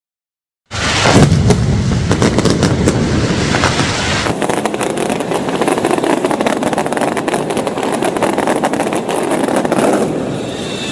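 Mascletà firecrackers going off in a loud, dense, rapid string of bangs and crackles, starting suddenly under a second in after a moment of silence.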